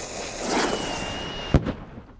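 Cartoon firework rocket: its lit fuse fizzes and sparks with a faint whistle for about a second and a half, then a single sharp bang.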